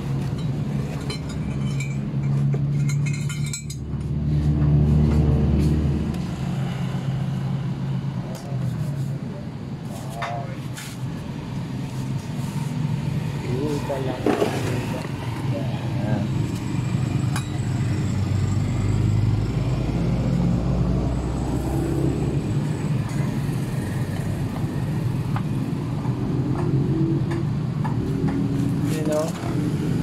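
A motor running steadily with a low, even hum, mixed with indistinct voices and a few light clicks of handling.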